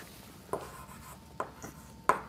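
Chalk on a blackboard: a few faint, short taps, one about half a second in and two more around a second and a half in.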